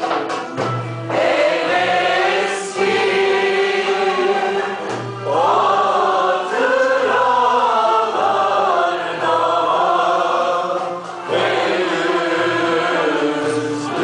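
A mixed choir of men's and women's voices singing a Turkish song together, in sung phrases separated by short breaks.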